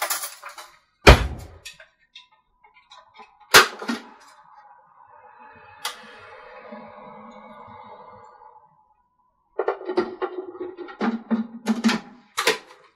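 Kitchen handling noises: a loud thunk about a second in as a drawer is shut, sharp clicks as the food processor's plastic lid comes off, a soft held tone for a few seconds, then quick clatter near the end.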